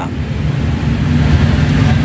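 Datsun Go's three-cylinder engine idling with a steady low hum, heard from inside the cabin.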